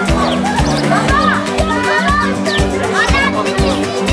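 Music with a steady beat, about three beats a second, and high voices rising and falling in pitch over it.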